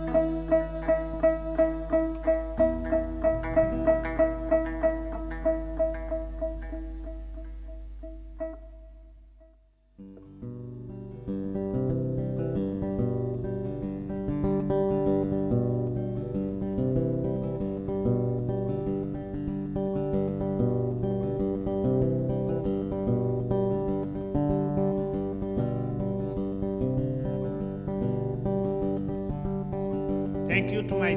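Acoustic guitar music. A repeated plucked figure of two to three notes a second fades out over the first eight seconds to a brief near-silence. About ten seconds in, a new fingerpicked guitar passage with low bass notes begins and carries on steadily.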